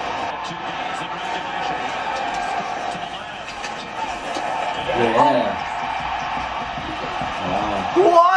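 Hockey game broadcast from a television: a steady murmur of arena crowd noise, with a man's voice briefly about five seconds in and again near the end.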